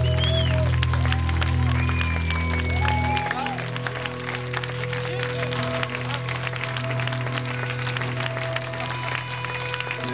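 An audience applauding over loud music; the heavy bass of the music drops away about three seconds in, leaving lighter music and the clapping.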